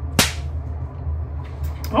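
A single sharp swish about a fifth of a second in, sweeping quickly from high to low, over a steady low hum.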